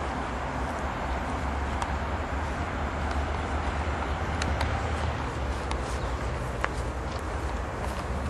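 Steady outdoor background noise: a low rumble under an even hiss, with a few faint clicks.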